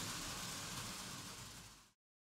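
Model freight train rolling along its track: a low, steady rushing noise that fades out near the end.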